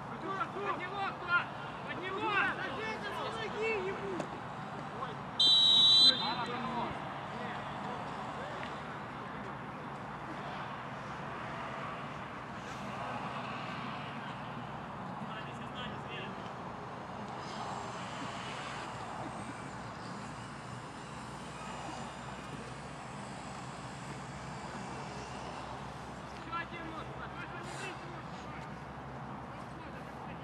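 Footballers shouting to each other on an open pitch, then a single sharp referee's whistle blast lasting under a second, about five and a half seconds in and louder than anything else. Afterwards a steady outdoor background with faint distant calls.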